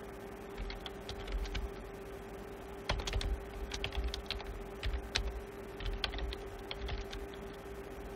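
Keystrokes on a computer keyboard, typed in short irregular runs, busiest from about three seconds in.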